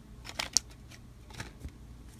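A few faint clicks and light rustles from a stack of 1987 Topps cardboard baseball cards being handled and squared in the hands, the sharpest click about half a second in.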